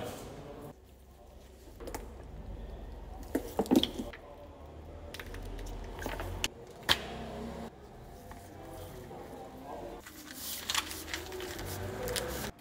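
Çiğ köfte dürüm being assembled by hand on a counter: scattered soft clicks, knocks and squelches from sauce bottles, vegetables and the lavash being handled and rolled, over a low hum and faint background voices.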